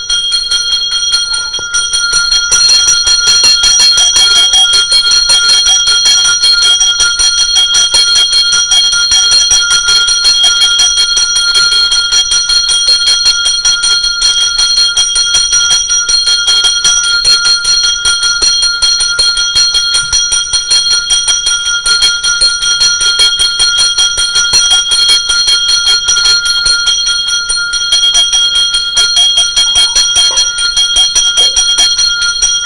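Temple bell rung rapidly and without pause, its fast strokes running together into one steady, loud ring that grows louder about two seconds in.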